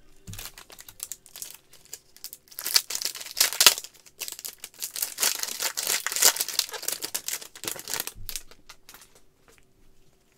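Foil wrapper of a baseball card pack being torn open and crinkled by hand: a dense run of crackling, crinkling rustles with one sharp snap partway through, dying away near the end.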